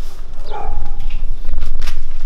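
Heavy low rumble of wind and handling noise on a handheld camera's microphone while walking, with a short high yelp about half a second in and a few sharp clicks near the end.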